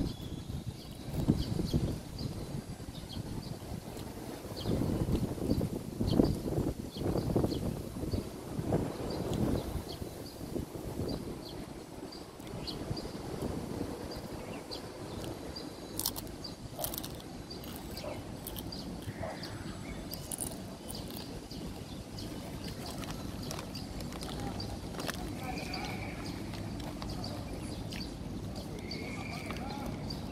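Outdoor ambience with indistinct distant voices and low rumbling swells in the first third, a faint regular high-pitched chirping all through, and a few short chirps near the end.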